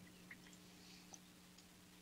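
Near silence: room tone with a faint steady hum and a couple of tiny ticks.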